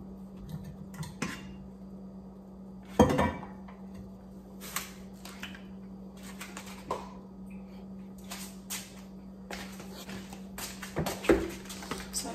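Scattered clatter and knocks of kitchen containers and utensils being handled and set down on a countertop, the loudest knocks about three seconds in and again near the end, over a steady low hum.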